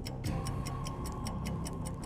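Game-show countdown clock sound effect: steady ticking, about four ticks a second, over a low held music bed, marking the contestant's 20-second answer time running out.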